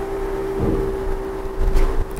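A steady, even hum over a low rumble, with a short, louder noise near the end.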